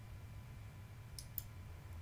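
Two quick computer mouse-button clicks, about a fifth of a second apart, a little over a second in, over faint low room hum.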